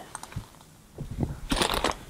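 Crunching and rustling of people moving on a dry forest floor, with a few light clicks and a short, louder burst of rustle about one and a half seconds in.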